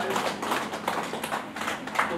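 Scattered hand clapping, a few irregular claps and taps rather than full applause.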